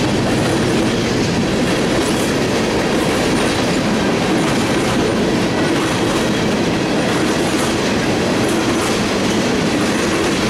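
Freight train tank cars rolling past at steady speed: a continuous, loud rumble of steel wheels on rail that does not let up.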